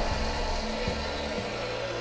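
Countertop blender running, blending a milk, banana and peanut butter shake: a steady whirring motor with liquid churning in the jar. Background music plays underneath.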